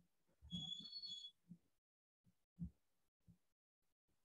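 Near silence: room tone with a brief faint high-pitched chirp about half a second in and a few soft low thumps.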